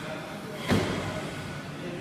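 A single thud of feet landing during box jumps, a short sharp impact a little under a second in, over quiet gym room tone.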